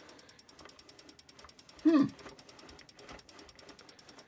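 Faint, rapid, even ticking, with a short hummed "mm" from a person about two seconds in.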